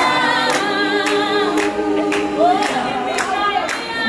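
A crowd of voices singing together without instruments, with hand claps keeping time about twice a second.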